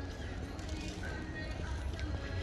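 Outdoor city ambience: faint music and distant voices over a steady low rumble.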